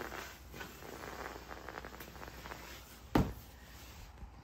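Soft shuffling with a run of faint clicks, then one sharp knock a little after three seconds in.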